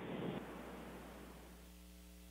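Hiss on an open voice communications loop, fading away over about a second and a half, over a steady electrical hum.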